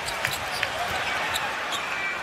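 Steady arena crowd noise with a basketball being dribbled on the hardwood court, heard as a few short knocks.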